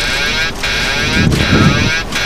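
Boeing 737-800 autopilot-disconnect warning wailing in the cockpit, a warbling alert that repeats about every three-quarters of a second. It sounds over the rumble of the jet rolling out after touchdown.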